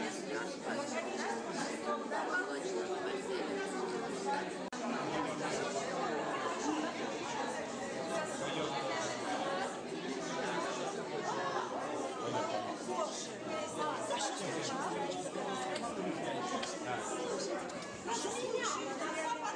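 Many people talking at once: a steady hubbub of overlapping conversations among a crowd in a large room.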